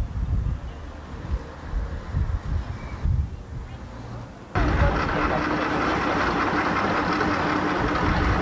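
Wind buffeting the microphone, with low gusty rumbles. About halfway in, the sound jumps suddenly to a louder, steady mix of people talking and a constant hum.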